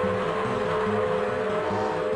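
Opening-titles jingle music: a held chord over a low pattern repeating about three times a second.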